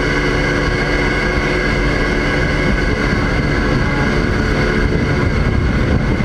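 Research ship's deck machinery running with a steady drone of several held tones over a low rumble, as the crane holds the CTD rosette sampler aloft.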